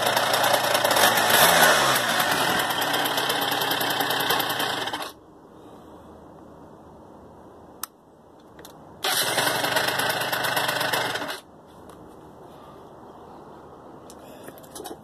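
Two-stroke scooter engine, a TNG Venice motor swapped into a 2006 Yamaha Vino Classic, running steadily and then cutting off suddenly about five seconds in. After a few quieter seconds and a single click it is running again for about two and a half seconds, then cuts off suddenly once more: the engine being shut down at the handlebar kill switch.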